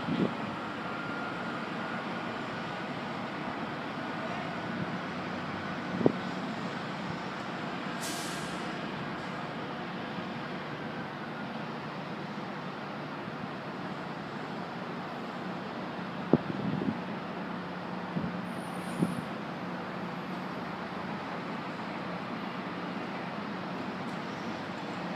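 Distant EMD GP38-2 diesel locomotives running as a freight train approaches, a steady even rumble with a faint high whine through the first half. A brief hiss comes about eight seconds in. A low hum grows steadier in the last third, broken by a few faint knocks.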